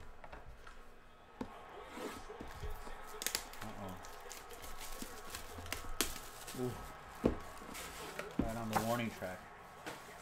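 Plastic shrink wrap crinkling and tearing as it is peeled off a cardboard trading-card box, with scattered sharp taps and knocks of the box against the table.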